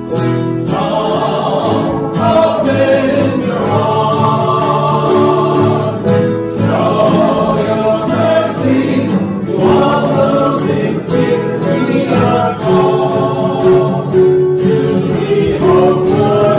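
Choir singing a Christian hymn with instrumental accompaniment.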